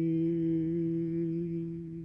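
A man's voice humming one long held note, steady in pitch, growing slightly quieter near the end.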